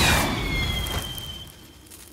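Firework rocket whooshing away with a high whistle that falls slowly in pitch over a rushing hiss, fading out within about a second and a half.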